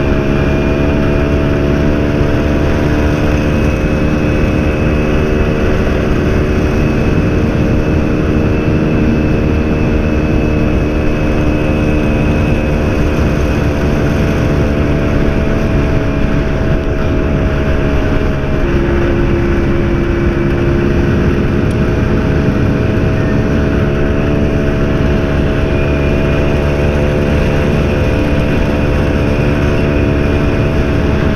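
BSA Bantam's two-stroke single-cylinder engine running steadily at road speed under a headwind, with wind noise on the microphone. The engine note drops a little about two-thirds of the way through, then comes back up.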